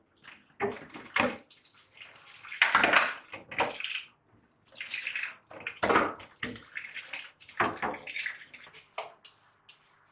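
Water splashing and sloshing in irregular bursts as clear plastic storage containers are rinsed under a kitchen tap and tipped out into a stainless steel sink, with plastic knocking against plastic.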